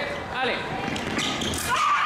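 Sabre fencing exchange: short spoken calls at the start, then a quick burst of footwork and blade clatter on the piste about a second in. A sustained high tone starts near the end as the touch lands.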